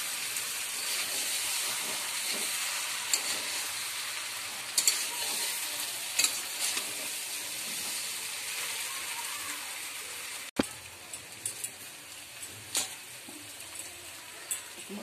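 Spiced potatoes sizzling in oil in a steel kadai as they are stirred with a metal spatula, with occasional scrapes and knocks of the spatula on the pan: the sauté (kosha) stage of aloo dum, when the potatoes are fried in the masala. About ten and a half seconds in, the sizzle drops suddenly to a quieter level.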